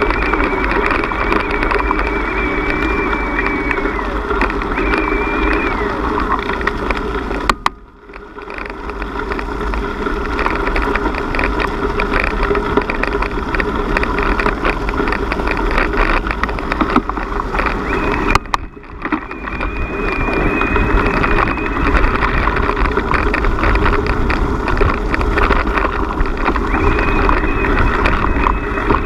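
Riding noise of a bicycle on a gravel track, picked up by a camera riding with it: steady rumble of tyres on gravel and wind rushing over the microphone. Twice, about 8 and 18 seconds in, a sharp click is followed by a brief drop in level.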